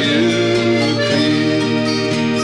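Scottish folk music instrumental passage, with an accordion holding sustained notes and carrying the melody.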